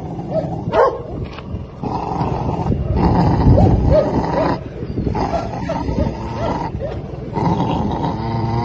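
Belgian Malinois puppy growling and grumbling in two long bouts, with short high whines over the growl.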